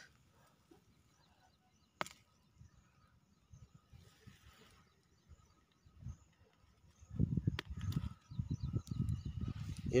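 Mostly quiet, with a single sharp click about two seconds in; in the last three seconds, low irregular rumbling and rustling from handling close to the ground while wild mushrooms are pulled from thick grass.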